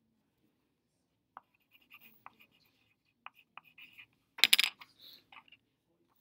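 Scattered short scratches and taps of a pen writing on paper, with one louder brief clatter about four and a half seconds in.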